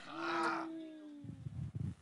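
A person's long, low, held vocal sound, like a drawn-out 'mmm', lasting about a second and sliding slightly down in pitch, followed by faint soft knocks.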